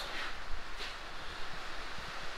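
Steady hiss of rain falling on a corrugated-steel workshop shed, with a faint click or two about half a second in.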